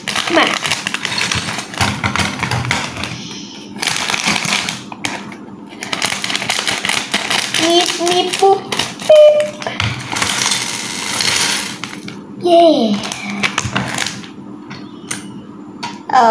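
A clear plastic bag of Lego pieces crinkling and rustling as it is handled and opened, with the small plastic pieces clicking and rattling inside. A child's voice makes a few short sounds in between.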